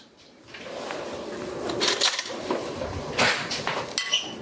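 Spoon stirring chopped cucumber and tomato in dressing in a glass bowl: wet rustling and scraping, with a few sharp clicks of the spoon against the glass about two and three seconds in.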